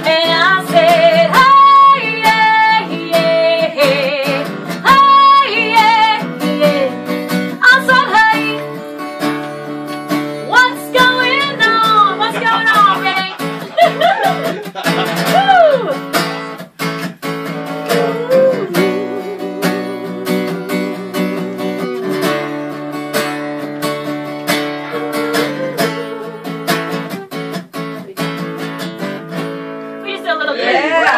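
Steel-string acoustic guitar strummed as accompaniment while a woman sings long held notes with vibrato and sliding pitch. Her voice drops away about two-thirds of the way through, leaving the guitar strumming on its own.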